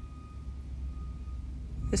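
Low steady background rumble with a faint high steady tone above it; a woman's voice begins right at the end.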